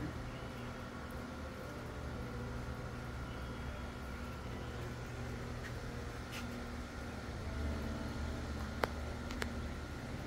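A steady low mechanical hum with a faint steady whine above it, and one sharp click near the end.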